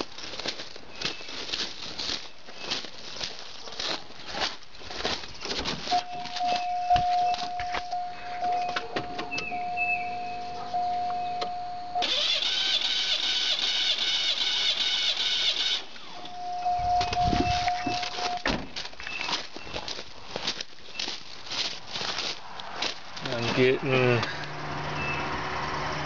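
Starter cranking a V6 engine with its spark plugs out, an even spin lasting about four seconds midway, as a compression gauge takes a cylinder's reading. Before and after come scattered clicks and taps of the gauge hose and keys being handled, with a steady tone sounding on and off.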